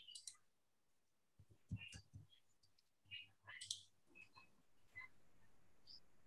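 Near silence broken by a few faint, scattered clicks, with a faint low hum underneath.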